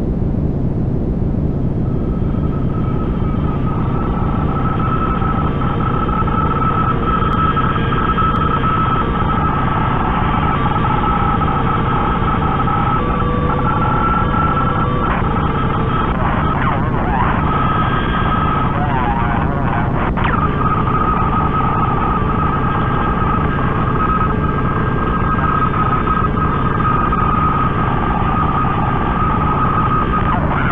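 Experimental dark-ambient noise drone: a dense, steady wash of noise with a sustained high tone held over it and brief wavering, gliding tones near the middle.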